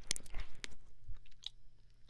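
Wet mouth sounds right against a 3Dio binaural microphone's ear, from licking and nibbling: a run of quick clicks and smacks, densest in the first second, then sparser.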